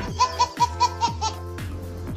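A baby laughing in a quick run of about six short laughs, roughly five a second, over steady background music. The laughing stops a little past halfway and the music carries on.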